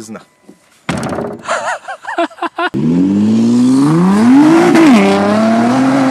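Tuned 660-horsepower Nissan GT-R's twin-turbo V6 accelerating hard, starting suddenly about three seconds in. The engine note climbs steadily, drops once at an upshift near five seconds, then climbs again.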